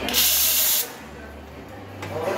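Espresso machine steam wand let off in a short, sharp burst of hissing steam for just under a second before it is shut off, the purge that clears condensed water from the wand.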